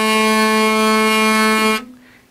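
Hurdy-gurdy trompette (trumpet) string sounding one steady, rich note under the turning wheel, raised from G to A by the engaged drone capo. It cuts off near the end.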